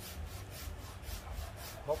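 Faint rubbing and scraping as a large potted bougainvillea stump is turned around by hand on its stand, over a low steady rumble.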